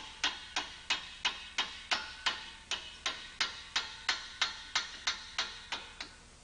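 A mallet tapping a metal block down into a steel frame, about three blows a second in a steady rhythm, each blow with a short metallic ring.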